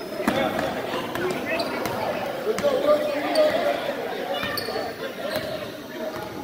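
Basketball bouncing and hitting a gym floor, with indistinct voices of players and spectators and a few short high squeaks, in a large echoing room.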